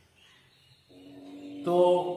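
A man's voice holding a long, steady-pitched note like a chanted syllable. It starts faint about a second in and grows loud near the end.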